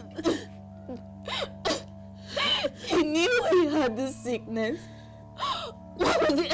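Women sobbing and wailing, with gasping breaths between the cries, over a steady sustained music bed.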